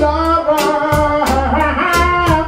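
Reggae music played loud, with a singer holding long notes, sliding up in pitch partway through, over a heavy bass line and a steady drum beat.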